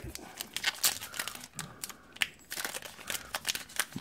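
Trading card pack wrapper being torn open and crinkled by hand: a run of irregular crackles and small rips.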